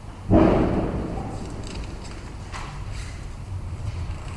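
A single dull thump close to the microphone about a third of a second in, fading over about a second, followed by a few faint small clicks and knocks, the sounds of handling things at the lectern.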